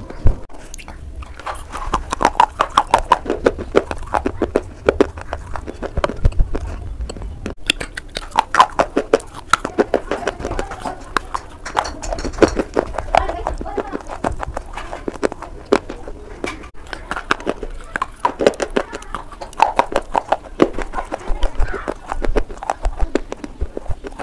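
Close-miked crunching and chewing of a slate clay bar: dense crackling crunches that go on without a break, with one loud snap of a bite just after the start.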